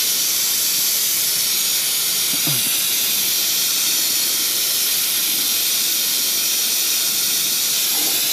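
Steady hiss from a well pressure tank with a failed bladder as it is drained.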